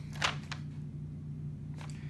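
Quiet room tone with a steady low hum, and a soft brief sound about a quarter second in.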